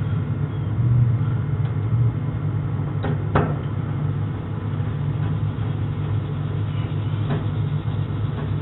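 A steady low drone throughout, with two short metallic clicks about three seconds in from a screwdriver on the screws that hold the solenoid coils onto a gas dryer's gas valve.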